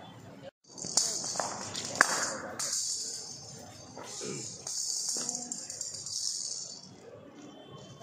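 Spells of high metallic rattling from a blind-cricket ball, a hollow plastic ball with metal bearings inside, as it is bowled and rolls along the ground. There is one sharp knock about two seconds in, and voices alongside.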